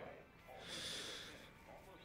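A man breathing in bed: one audible breath about half a second in, lasting about a second, then faint room sound.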